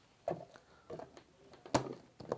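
Short knocks and clatters of a plastic measuring jug and a blender jar being handled, about three in all, the loudest near the end.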